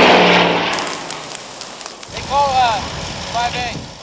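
A low-flying four-engine air tanker passing overhead. Its engine noise is loud at the start and fades away over about two seconds. A voice is heard briefly near the end.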